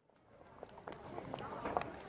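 Busy outdoor street-market background fading in: a low murmur of distant voices with faint footsteps and small knocks.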